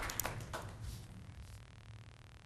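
Two short, sharp taps within the first second, then faint room tone with a steady low hum.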